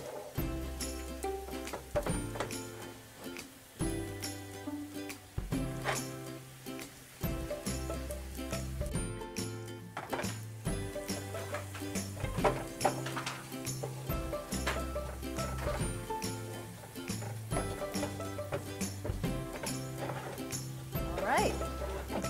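Instrumental background music with bass notes that change every second or so, with light clicks scattered through it.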